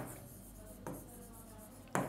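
Chalk writing on a blackboard: faint scratching strokes, with a light tap about a second in.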